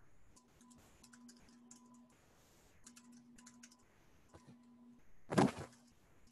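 Quiet typing on a computer keyboard: a run of scattered key clicks as a terminal command is entered. About five seconds in comes one short, louder rush of noise.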